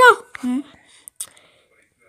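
Speech only: a rising "hein?" and a short word, then a brief pause with a couple of faint ticks.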